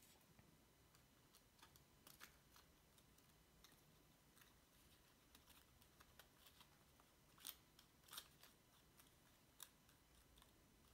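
Near silence with faint small clicks and light rustles of hands handling paper tabs and a plastic glue bottle, with two slightly louder clicks in the last third.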